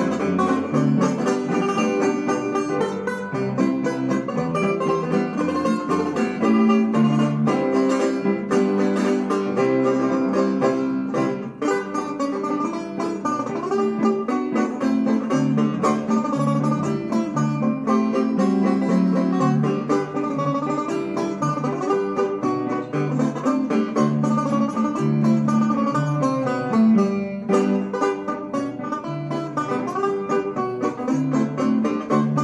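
Plectrum banjo playing a classic jazz tune with a pick, in fast plucked notes over a walking line of steady low bass notes.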